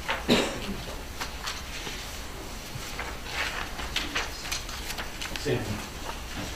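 Meeting-room handling noise as paper ballots are collected around a table: a sharp knock just after the start, then scattered small clicks and paper rustles. Low murmured voices and a steady low hum run underneath.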